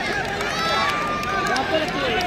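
Crowd of spectators talking and calling out, many voices overlapping at a steady level.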